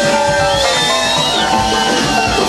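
Live rock band playing: an electric guitar holds long lead notes that bend in pitch, over drums.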